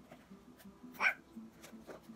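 A girl's single short 'ah!' exclamation about a second in, over faint background music.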